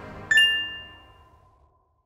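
Closing logo sting: the fading tail of a music bed, then a single bright electronic chime struck about a third of a second in and ringing out over about a second.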